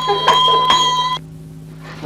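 A bell ringing on a steady pitch, then cutting off suddenly about a second in, leaving only a low hum.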